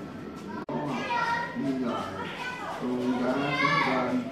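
Children's voices chattering and calling out, with a rising high call near the end; the sound cuts out for an instant just over half a second in.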